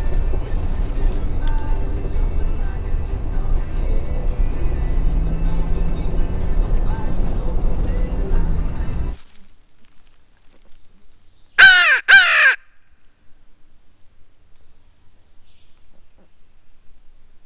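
Steady low road rumble inside a moving pickup truck's cab, which stops abruptly. After a few quiet seconds come two loud, close, harsh caws from a crow locator call, blown to make a turkey gobble.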